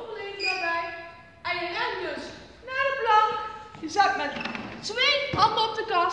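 Speech only: a woman talking, giving instructions.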